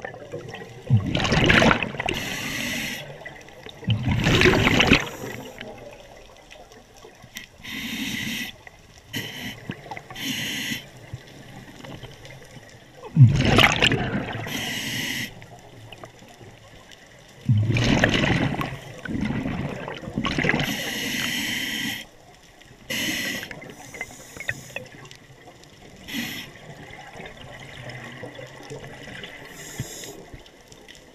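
Scuba diver's breathing through a regulator underwater: loud bubbling bursts of exhaled air, a few seconds apart and some lasting a second or two, with quieter bubbling and water noise between.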